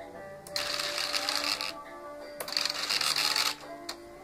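Two bursts of electric mechanism whirring, each about a second long and starting and stopping abruptly, typical of the model jet's electric landing gear retracts cycling up and then down.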